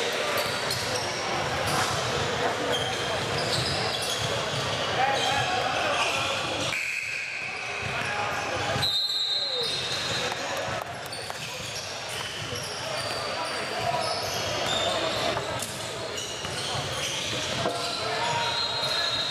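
Basketball bouncing on a hardwood gym court during a game, with repeated short knocks and unclear voices of players and spectators echoing in a large gymnasium.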